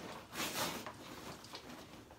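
A crinkly foil gift bag being pulled off a boxed gift. One louder rustle about half a second in, then softer rustles and small clicks as it is handled.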